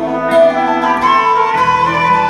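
A live Celtic folk band plays an Irish-style tune. The fiddle carries the melody over guitars, and the bass moves to a new note about a second and a half in.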